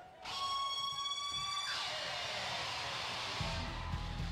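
Arena entrance music starting: a sudden held electronic blare of several steady tones, then a rising rush, with a driving rock beat coming in near the end.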